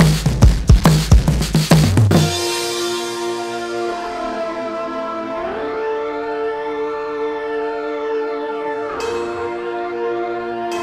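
Background music: a drum beat that stops about two seconds in, giving way to sustained string-like chords that change near the end.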